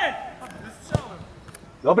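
A football kicked once: a single sharp thud about a second in, with players' shouts around it.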